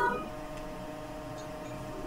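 Quiet room tone with a faint steady hum, after the brief tail of a spoken "uh" right at the start.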